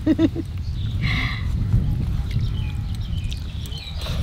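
A short animal call, about half a second long, about a second in, over a steady low rumble.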